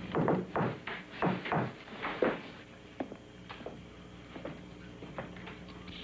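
A quick, irregular run of knocks and thumps in the first couple of seconds, then a few fainter clicks over a low steady hum.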